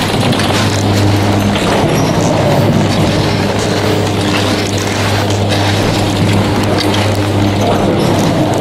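Leitner-Poma detachable chairlift terminal running: a steady low hum from the drive machinery, with faint clicks and rattles as the chairs pass through.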